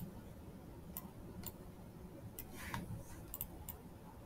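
Computer mouse clicking: about seven short, sharp clicks at uneven intervals, with a brief rustle a little before three seconds in.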